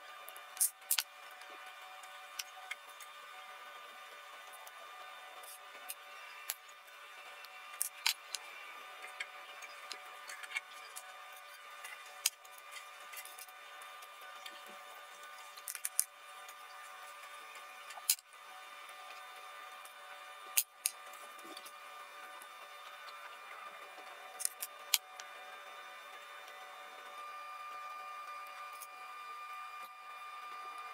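Scattered sharp clicks of small metal pliers and metal keychain hardware (screw eyes and rings) being handled while fitting them into resin keychain discs, over a faint steady hum.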